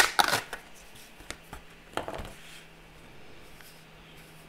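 Sheets of a pattern paper block being handled: a sharp paper snap and rustle at the start, then shorter rustles about one and two seconds in.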